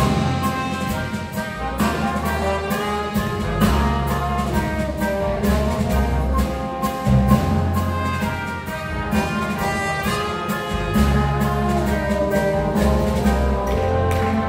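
Symphony orchestra playing an arrangement of a Brazilian rock song live over a steady beat, heard from the audience seats.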